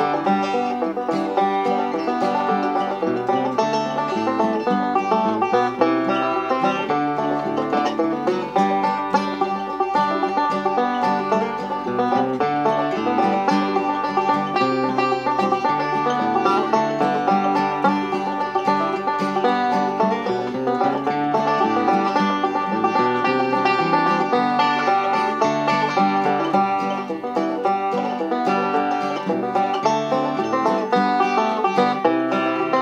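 Banjo playing an old-time tune solo, a steady continuous run of picked notes.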